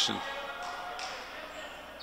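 A basketball bouncing on a gym floor, with a faint murmur of voices in the hall.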